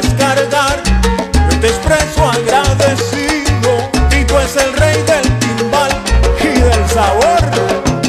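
Salsa music, an instrumental passage: a bass line of repeated low notes under dense percussion and melodic lines that bend in pitch.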